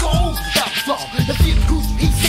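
1990s Chicago rap: a rapper delivering verses over a bass-heavy hip hop drum beat.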